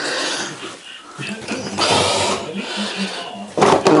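Handling noise of a flexible plastic hose being worked into position, with irregular rustling and scraping and a sharp knock near the end.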